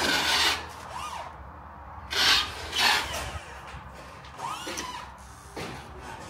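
Rasping, scraping strokes of hand-tool work: three loud scrapes, at the very start, a little over two seconds in and just before three seconds, with fainter squeaky scrapes between.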